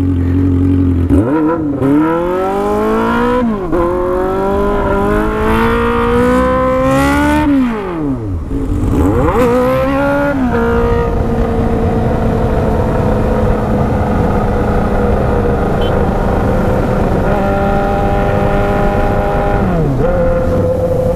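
Honda Hornet's inline-four engine pulling hard through the gears. The revs climb and then fall at each of three upshifts. It then holds steady cruising revs for the second half, with a drop in revs right at the end.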